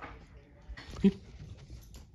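A dog makes one brief vocal sound about a second in, just after a short breathy rush.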